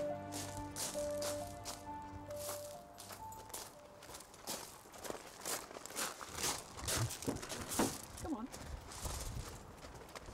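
Footsteps crunching on gravel, about two a second. Soft music fades out over the first few seconds.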